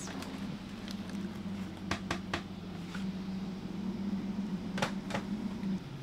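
Steady low machine hum, like a fan or air conditioner, with a few sharp crinkles and clicks from a homemade parchment-and-tin-foil muffin liner being peeled off a muffin, about two seconds in and again near the end.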